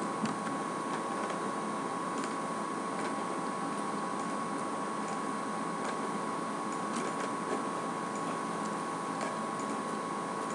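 Steady background hiss with a faint, steady high tone running through it, and a few faint clicks.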